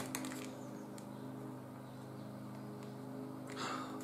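Small plastic-wrapped wax melt being handled: a few light clicks early on, then a short hissing rustle near the end, over a steady low hum.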